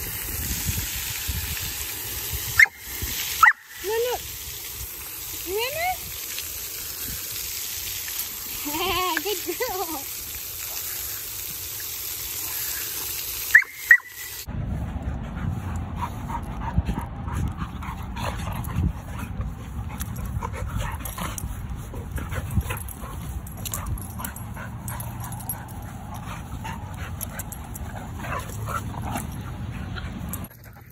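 Fountain jets spraying water with a steady hiss, while a dog gives several short rising and falling whines and yips. About halfway through it cuts to two dogs play-wrestling on grass: rough, low scuffling noise with many small ticks.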